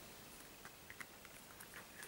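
Near silence: room tone with a few faint, soft clicks.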